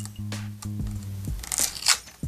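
Clear adhesive tape being peeled off a handheld vacuum's plastic body, a short tearing rasp about one and a half seconds in, over steady background music.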